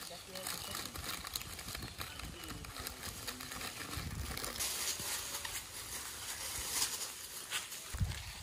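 Crinkling of a plastic snack packet and rustling as grey langurs crowd and grab at it, with faint voices underneath. The crackling comes in uneven bursts, busiest in the second half.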